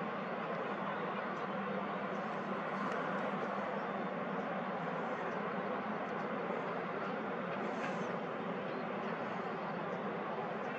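Steady, even outdoor background noise: a low hum under a wide hiss, with no distinct events.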